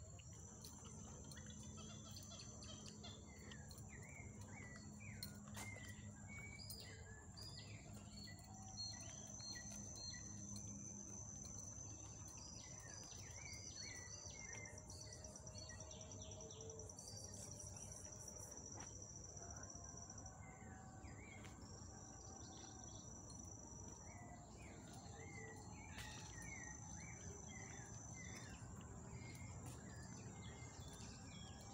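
Faint forest chorus of insects: a steady high-pitched whine throughout, with longer high trills that start and stop several times, mixed with many short, quick bird chirps.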